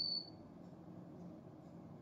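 Near silence. A faint, thin high-pitched whine fades out within the first moment.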